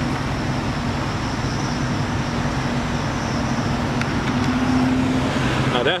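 Steady low mechanical hum over a constant rush of vehicle-like noise, with the hum a little stronger about four and a half seconds in. A man's voice starts at the very end.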